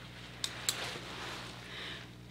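Hair-cutting scissors snipping twice, two sharp clicks about a quarter second apart, as they close through a section of a hair topper. A soft rustle of handled hair and a faint steady hum lie beneath.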